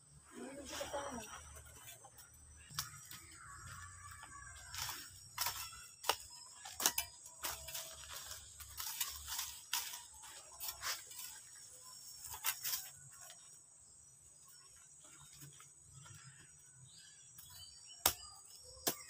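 Short-handled hoe chopping into garden soil: a string of irregular, sharp strikes as the earth around a taro plant is loosened to dig it up.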